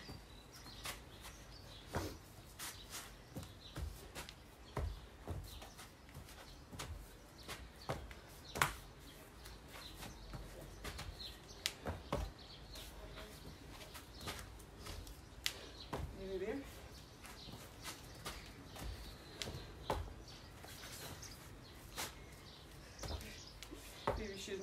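Faint, irregular soft thuds and knocks of people jumping and landing during burpees on a grass lawn.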